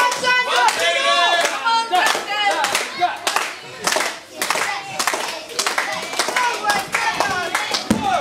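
Small crowd clapping, with spectators' voices and shouts mixed in, loudest in the first couple of seconds.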